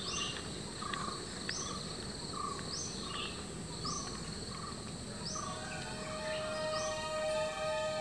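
Grassland wildlife ambience: two kinds of short animal call repeat at steady intervals, a high one about once a second and a lower one more often, over a steady high drone. Soft music fades in over the last two seconds.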